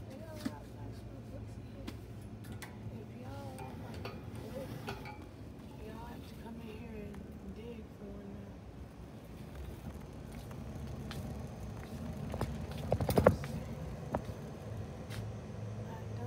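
Shop-floor ambience as a wire shopping cart is pushed along: a steady low hum with faint, indistinct background voices, then a short clattering rattle, the loudest sound, about three-quarters of the way through.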